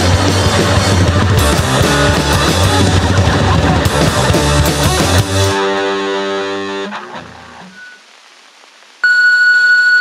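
Hardcore punk band with distorted guitar, bass and drums playing full-on, stopping about five and a half seconds in on a ringing guitar chord that fades away. About nine seconds in, a distorted electric guitar starts again with a high held note.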